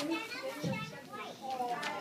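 Young children's voices chattering at once, indistinct talk and little calls overlapping.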